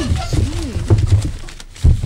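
A person's voice making low wordless sounds, close to the microphone, with a loud short thump near the end.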